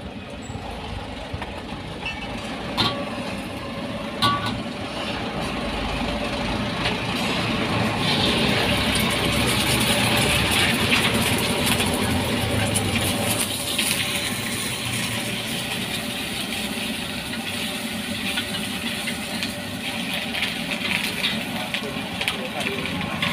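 Egg frying in hot oil in a wok: a loud sizzle that swells about eight seconds in and eases off after a few seconds, over the steady low rumble of the stove's burner. Two sharp clicks come about three and four seconds in.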